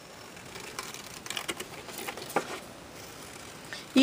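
Scissors cutting through white cardstock along a curved pencil line: a series of quiet, irregular snips.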